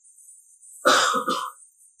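A person clearing their throat with a short cough, in two quick bursts about a second in.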